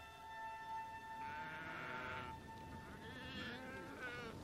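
Sheep bleating faintly: a few wavering calls, the first about a second long, over a steady held tone that fades out partway through.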